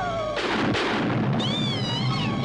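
Cartoon soundtrack: a voice-like note cut off by a sudden loud burst of noise, with a second burst just after, that dies away over about a second. It is followed by a high, wavering cry.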